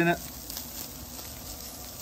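Pulled pork sizzling steadily on a hot flat-top griddle as it warms up and its fat begins to render out.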